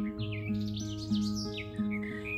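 Acoustic guitar played in a slow, even pattern, a new chord or note roughly every half second, ringing between the singer's lines. Small birds chirp and trill in quick, falling notes over it.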